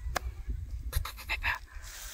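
A man breathing audibly in a pause between sentences, several short breaths about a second in, over a steady low rumble.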